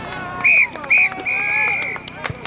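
Referee's whistle blown in three blasts, two short and then one longer, over faint voices.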